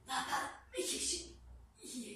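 A woman breathing deeply and audibly, three quick breaths, some of them partly voiced.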